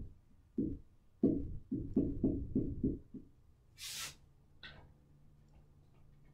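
Dry-erase marker writing a row of digits on a whiteboard: a quick run of short, low knocks of the pen against the board, then a brief hiss about four seconds in.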